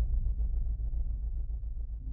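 Low rumble from a channel logo sting's sound design, easing slightly in level.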